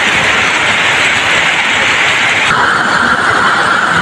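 Heavy tropical downpour, a loud steady hiss of rain, with vehicles driving through ankle-deep flood water on the road. The sound changes abruptly about two and a half seconds in.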